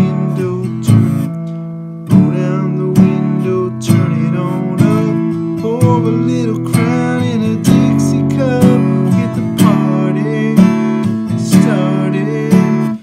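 Taylor GS Mini acoustic guitar, capoed at the second fret, strummed without a pick using the fingernail, about one strum a second. It runs through C, G, D and E minor chord shapes, two strums each.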